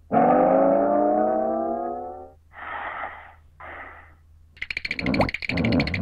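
Cartoon character voice effects: one long vocal 'ooh' slowly rising in pitch for about two seconds, then two short breathy puffs, then a rapid clicking chatter near the end.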